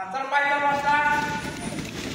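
A man's long drawn-out shout, held for about a second, then quick footsteps and scuffling of bare and shod feet on a wrestling mat.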